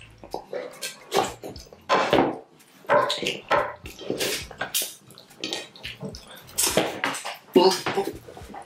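Wet slurping and sucking as slimy ogbono soup is licked off fingers, in a run of short bursts, along with fingers smearing across the soup-coated plates.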